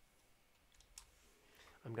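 A few faint, separate clicks from a computer keyboard and mouse in a quiet room.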